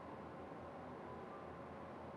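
Quiet hall room tone: a faint steady hiss with a low hum and a few faint steady tones, with no ball strikes.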